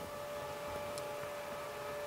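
Faint steady hiss with a thin steady hum: the background noise of a remote interview's audio feed, with a faint tick about halfway through.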